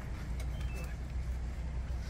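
A vehicle's engine idling steadily, a constant low rumble, with faint voices in the background.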